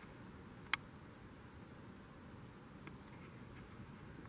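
Low, steady background hiss with one sharp click about three-quarters of a second in and a much fainter tick near three seconds: handling noise from a handheld compact camera.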